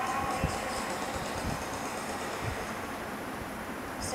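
Steady rushing background noise with a few soft, low knocks about a second apart; no music or speech.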